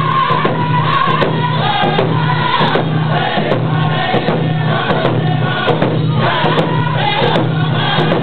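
Cree round dance song: a group of singers in unison over hand drums keeping a steady beat.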